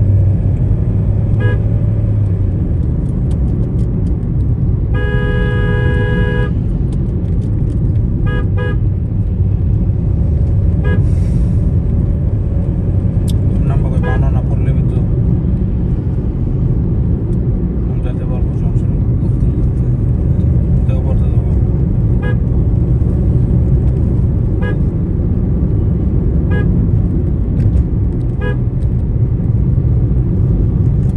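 Steady low rumble of road and engine noise inside a moving car, with a vehicle horn held for about a second and a half about five seconds in. Brief, fainter horn toots from traffic come every few seconds.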